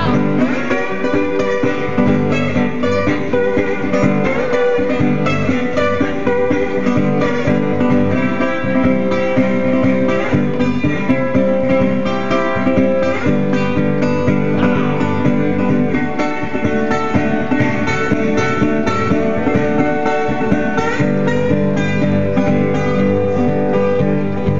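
Steel-bodied National resonator guitar played with a bottleneck slide in an instrumental blues break, a steady low rhythm on the bass strings under gliding slide notes higher up.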